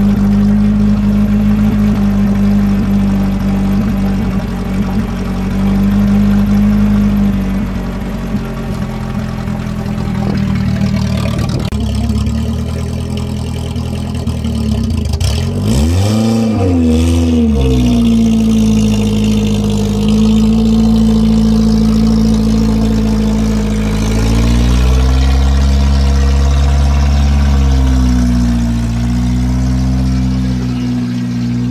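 1983 Toyota Tercel 4WD wagon's four-cylinder engine running after a jump start, idling steadily, revving up and back down once about 16 seconds in, then rising and falling in pitch over the last several seconds as the car is driven.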